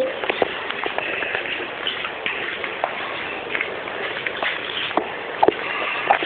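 Handling noise on a phone's microphone as the phone is moved about: a steady rustling hiss with scattered clicks, and two sharper knocks near the end.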